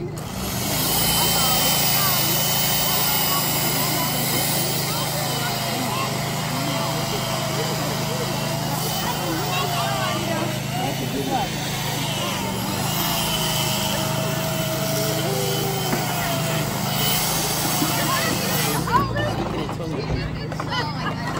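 Chainsaw cutting into a block of ice, running steadily under load and throwing off ice chips, then stopping abruptly about a second before the end.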